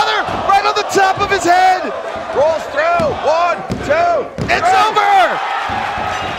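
A wrestler's body slams onto the ring canvas right at the start, followed by loud shouting voices and reactions from the crowd.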